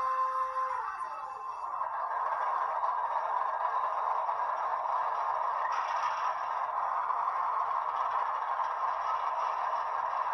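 A ScaleTrains ES44AH GEVO model locomotive's onboard sound: a held tone cuts off with a falling glide about a second in. Then the diesel engine sound builds up and settles into a steady run with little bass.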